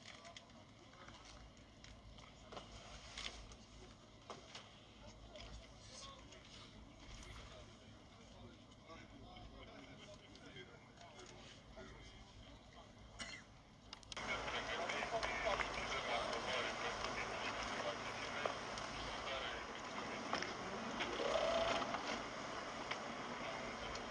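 Faint rustling and small clicks of hands working a rope-wrapped package. About fourteen seconds in, this gives way abruptly to a much louder steady rush of wind and water noise from a boat under way at sea.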